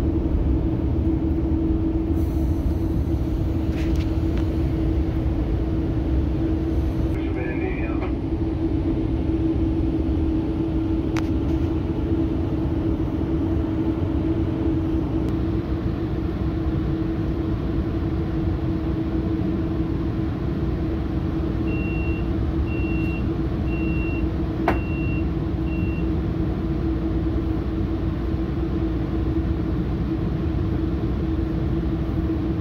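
Steady rumble of a Metrolink commuter train in motion, heard inside the passenger coach, with a constant hum. Near the end, five short high beeps sound about a second apart.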